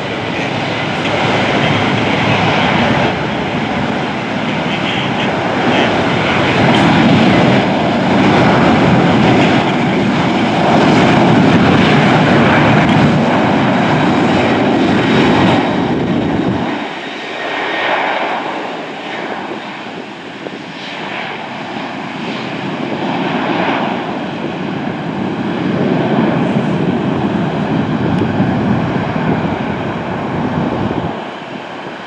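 Jet engines of a Boeing 737 airliner running, a loud steady rush. The deep rumble cuts out suddenly partway through, leaving a thinner engine noise that builds again toward the end as a jet rolls for takeoff.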